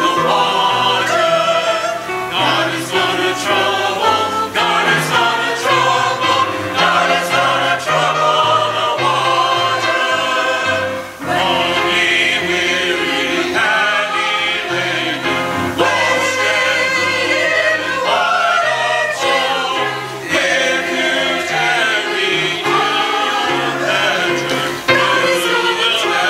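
Church choir of mixed men's and women's voices singing an anthem in parts, with a brief dip between phrases about halfway through.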